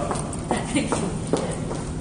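Footsteps on a hard corridor floor, picked up close by a handheld phone's microphone, with steady room and handling noise under them.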